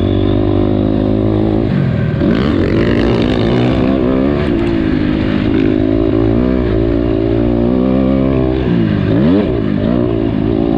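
Honda CRF250R's single-cylinder four-stroke engine revving hard under the rider. The revs drop sharply and climb back twice, about two seconds in and again near the end.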